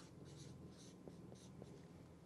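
Felt-tip marker writing on chart paper: a run of faint, short scratching strokes.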